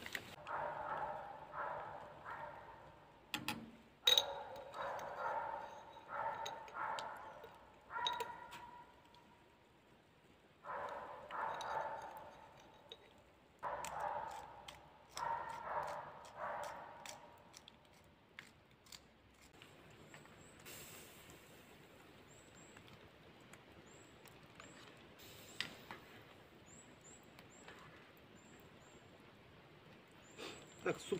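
A metal spoon stirring and scraping around a small cooking pot on a fire grate, in short rhythmic strokes that ring at the same pitch each time, in clusters through the first half. After that it goes quieter, with a few sharp clicks and faint bird chirps.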